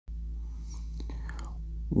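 A steady low electrical hum with a few faint clicks, then a man's voice begins right at the end.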